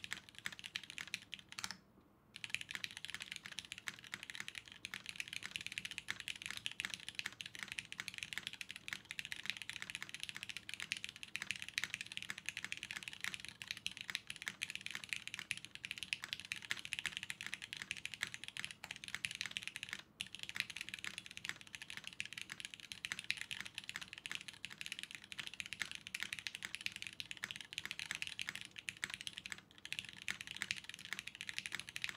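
Fast, continuous typing on a 60% mechanical keyboard with Cherry switches in an aluminum case: a dense, even stream of crisp, clean keystrokes. There are a few scattered presses at first, then nonstop typing, with a brief pause about twenty seconds in.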